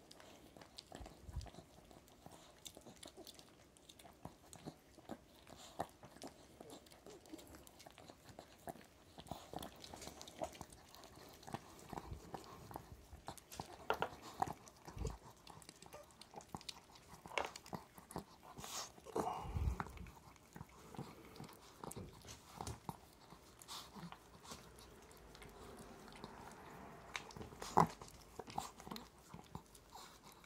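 A small white dog licking a man's nose and face close to the microphone: irregular wet licks and tongue smacks, with one sharper smack near the end.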